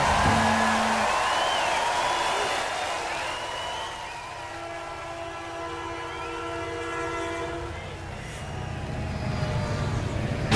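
Train sound effect: a noisy rumble with a multi-tone train horn chord held for about three seconds in the middle, fading as it ends.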